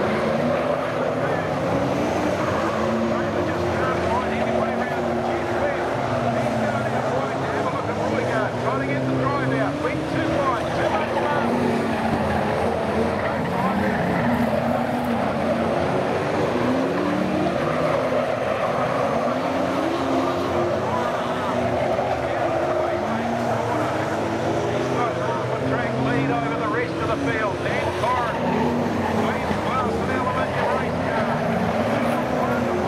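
Several V8 saloon race cars running hard around a dirt oval, their engine notes repeatedly rising and falling as the cars go through the corners and down the straights.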